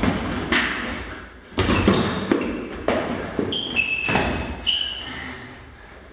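Training sabres clashing and striking in a sparring bout, with thuds of stamping footwork on the gym floor. A few sharp impacts come about a second apart, with a couple of brief high-pitched ringing tones near the middle, and the action dies down near the end.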